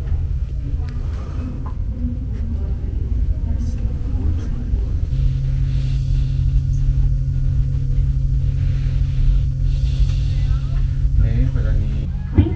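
Steady low rumble inside a Mugunghwa passenger train car, with a steady machinery hum that comes up about five seconds in and holds.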